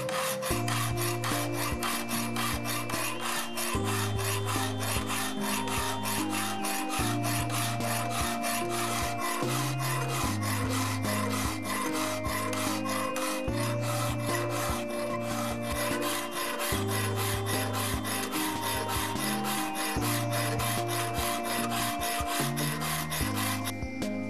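Hand file drawn back and forth across a hardenable O-1 tool steel knife blade in quick, even strokes, cutting a full flat grind bevel; the filing stops just before the end. Background music plays underneath.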